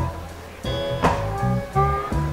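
Slow blues guitar playing alone between sung lines: a note dies away, then after a brief lull a few sustained notes ring out about two-thirds of a second in.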